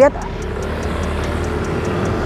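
A motor vehicle running close by, a steady low engine hum with road noise that swells slightly.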